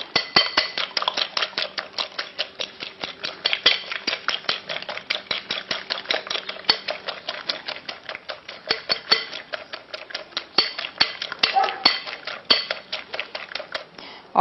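A metal fork beating eggs in a glass mixing bowl: quick, continuous clinking taps of metal on glass, several a second.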